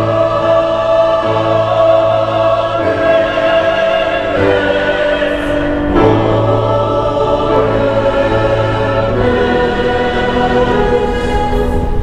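Mixed choir of men and women singing sustained chords, the harmony shifting every few seconds.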